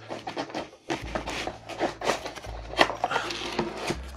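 Packing being handled: a cardboard box pulled out of foam inserts and the lid of a pine wooden case closed, a scatter of light knocks, clicks and scrapes.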